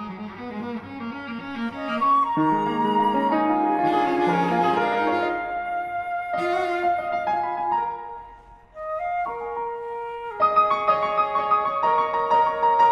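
Flute, cello and piano trio playing contemporary classical chamber music, the cello bowed. The music thins to a brief near-pause about two-thirds of the way through, then comes back louder with sustained notes.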